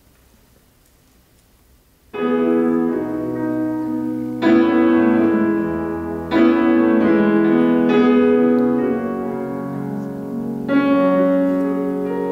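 Grand piano playing the opening bars of a song, with no singing yet: after about two seconds of quiet, it begins with sustained chords, and new chords are struck about every two seconds.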